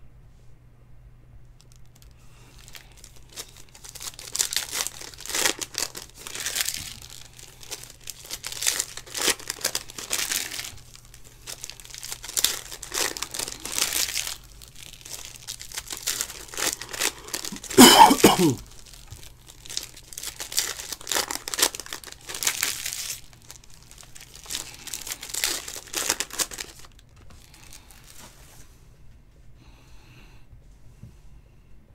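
Foil trading-card pack wrappers being torn open and crinkled by hand, in a run of crinkling bursts. A little past halfway there is one louder, short sound that falls in pitch.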